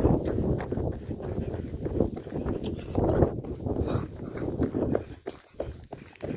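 Footsteps of a person running on the ground, thudding unevenly, with low rumbling wind and handling noise on the phone's microphone.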